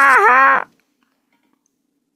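A woman's drawn-out, wavering laugh that stops about two-thirds of a second in.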